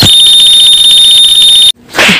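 Loud, steady, high-pitched electronic alarm-like tone, a meme sound effect edited in over the picture, that cuts off suddenly near the end.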